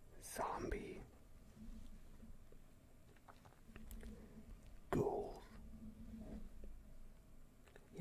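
A man whispering the word "ghoul" close to the microphone, twice: about half a second in and again about five seconds in.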